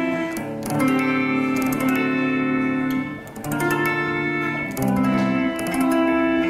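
Guitar with a capo at the fifth fret playing a run of jazzy chord shapes. Each chord is struck and left to ring, and they change about every one to two seconds.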